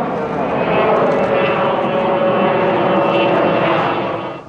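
Sukhoi Superjet 100's twin SaM146 turbofan engines at high power as the airliner climbs steeply overhead: a loud, steady jet rush with a whine of several held tones.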